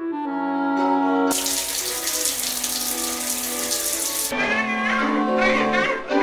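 Running water starts about a second in and cuts off suddenly some three seconds later, over background music.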